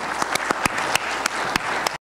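Audience applauding: many hands clapping in a dense, even patter that cuts off suddenly at the end.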